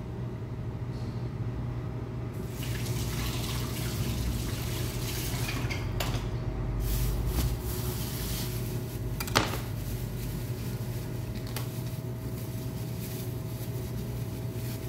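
Kitchen knife cutting a leek on a cutting board: a few sharp knocks of the blade, the loudest about nine seconds in. Under them a steady hum and hiss run throughout.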